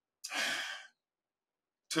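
A man sighing once: a single breathy exhale of about half a second that fades out.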